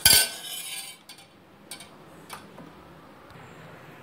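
A metal spoon clinks sharply against a stainless steel pot of milk, ringing for about a second, followed by a few faint clinks.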